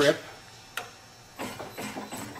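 A sharp mechanical click, then a few light clicks and rattles near the end, from the parts of a book-taping machine being handled.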